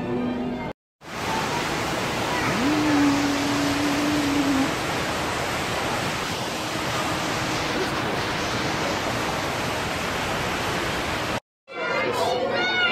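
Background music cuts off about a second in. After it comes a steady, even rush of falling water from a waterfall in a rock-and-plant exhibit. A single held note sounds for about two seconds near the three-second mark.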